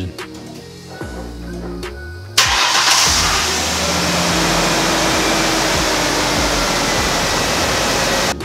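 1998 Ford Explorer engine starting suddenly about two and a half seconds in, then running steadily. It fires now that fuel reaches the engine again, after the burst, softened fuel hose inside the tank between the pump and the fuel line was replaced.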